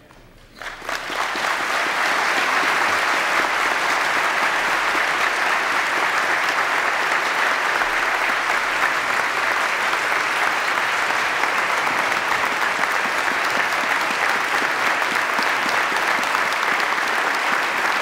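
A large audience applauding: the clapping starts about a second in, builds quickly and then holds steady and dense.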